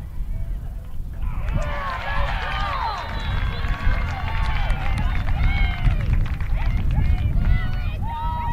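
Many high voices shouting and cheering at once as a lacrosse goal is scored, breaking out suddenly about a second in and carrying on for several seconds over a steady low rumble.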